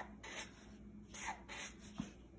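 Black permanent marker drawing short strokes on paper: a few faint, scratchy strokes as small triangles are drawn.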